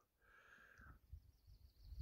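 Near silence, with a faint short tone in the first second.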